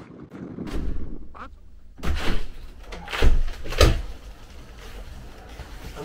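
A few heavy thumps and knocks, the loudest two about half a second apart.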